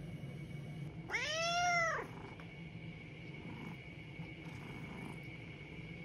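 A British shorthair cat gives one meow about a second in. The meow lasts just under a second and rises then falls in pitch.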